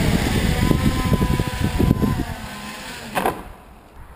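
Electric quadcopter motors and propellers running inside a foam Hiller ring platform, with a steady whine and repeated knocks as the unstable craft bumps along the ground; the motors cut off suddenly a little after three seconds in. The instability came from a loose gyro wire.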